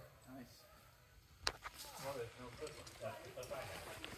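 Quiet talking, with a single sharp click about a second and a half in, the loudest sound.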